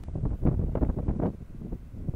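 Wind buffeting the microphone: an uneven low rumble that is strongest in the first second and eases toward the end.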